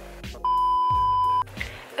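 A single steady electronic beep, one high pure tone lasting about a second, like an edited-in bleep, over soft background music with low plucked notes.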